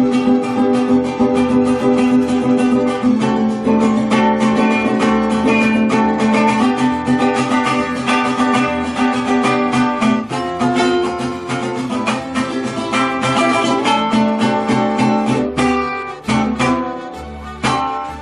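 Solo five-string mariachi vihuela strummed in fast rasgueado strokes, playing the chordal rhythm it gives a mariachi. Chords change every few seconds, with a couple of short breaks in the strumming near the end.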